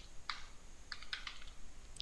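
Computer keyboard typing: a handful of light keystrokes.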